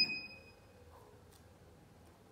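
A single high electronic beep from the bottle cap torque tester's keypad as a button is pressed, fading within about half a second. Then quiet room tone with a faint click.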